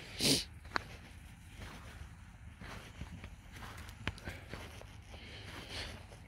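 Quiet, windless open-air ambience while walking. A short breathy puff comes just after the start, followed by a few faint clicks.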